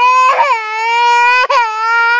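A toddler crying loudly in one long, steady-pitched cry, with brief catches about half a second and a second and a half in.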